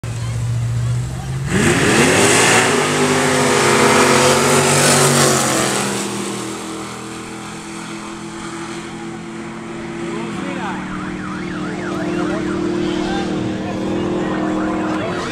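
Tube-frame drag racing cars idling at the start line, then launching hard about a second and a half in: the engines jump in loudness and climb in pitch as they accelerate. The sound fades after about five seconds as they run down the quarter-mile, leaving a steady engine drone and voices near the end.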